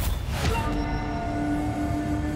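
Dramatic TV-serial background score: a rushing swell in the first half-second, then steady held low tones over a deep rumble.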